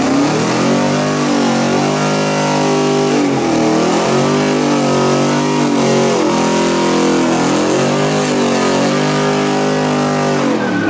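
Ford F-150 pickup doing a burnout: the engine is revved hard and held high while the rear tyres spin. Its pitch climbs over the first second or so and dips briefly about three and a half and six seconds in.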